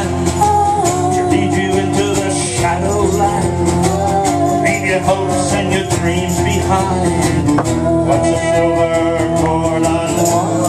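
Instrumental break in a live acoustic song: a violin plays a melody over a strummed acoustic guitar.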